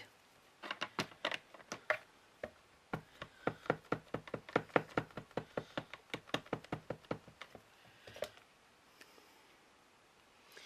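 A rapid, uneven run of light taps, several a second, stopping after about seven seconds: a rubber stamp mounted on a clear acrylic block being dabbed repeatedly onto an ink pad to ink it.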